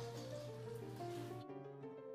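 Background music: a light melody of short notes.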